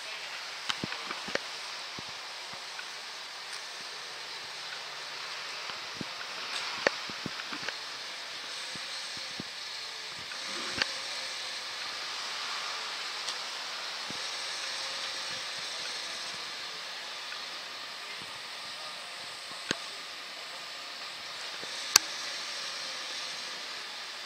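Faint, steady outdoor hiss with a few sharp clicks scattered through it, the loudest near the end.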